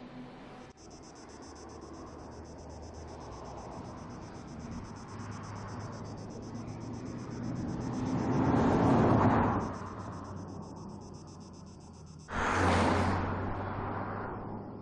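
A BMW X2 driving by on a road. Its engine and tyre noise swell as it approaches and passes about nine seconds in. A second loud pass starts suddenly near the end and fades away.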